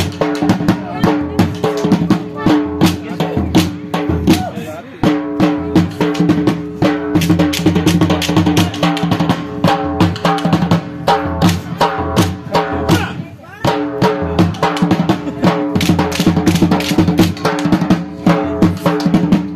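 Loud, fast dance music driven by dhol drumming, with rapid repeated drum strokes over a sustained melody line. The loudness dips briefly about thirteen seconds in.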